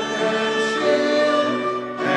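A congregation singing a hymn together, in slow, held notes.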